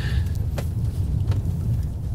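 Ford F-150 Lightning electric pickup driving hard on a loose dirt course with traction control off: a steady low rumble of tyres on dirt and gravel, with a couple of faint clicks.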